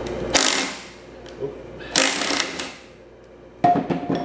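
Cordless power driver running in two short bursts, backing out the spring-and-ball detent bolt of a utility-vehicle transmission's shift cog. A few sharp clicks follow near the end.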